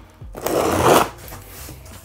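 Packing tape being ripped off the top of a cardboard box: one loud rasping tear lasting under a second, followed by softer rustling of the cardboard flaps.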